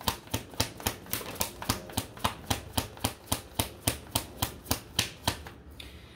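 A deck of tarot cards being shuffled by hand: a steady run of light card snaps, about four a second, stopping shortly before the end.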